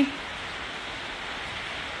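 Steady, even background hiss of workshop room noise, with no distinct knocks, tones or mechanical rhythm.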